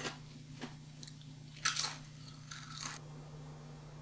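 A few short crunching, crackling sounds, the loudest about a second and a half in and another cluster near three seconds, over a low steady hum.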